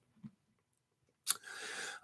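Near silence, then about a second and a quarter in a single mouth click, followed by a short in-breath just before speech.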